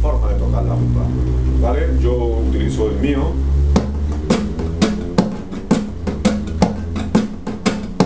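Nylon-string classical guitar played with a rumba strum: from about four seconds in, quick rhythmic chord strokes with sharp percussive hits, about three or four a second. A man's voice is heard before the strumming starts.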